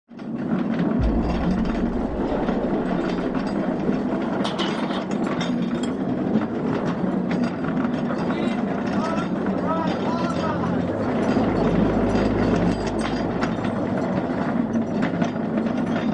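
A dense, steady bed of mechanical clatter and clicking with indistinct voices mixed in, and a low rumble that swells about a second in and again past the middle.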